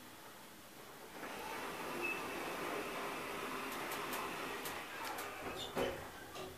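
KONE elevator car doors sliding shut: a steady whirr from the door operator for about four seconds, starting about a second in, ending with a knock as the doors meet near the end.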